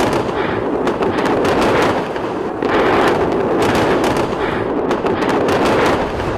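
A continuous barrage of crackling bangs and pops, swelling and easing in waves about every two seconds.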